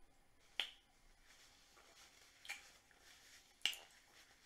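Eating mouth sounds: three sharp lip-smack clicks while chewing, about half a second in, about two and a half seconds in and near the end.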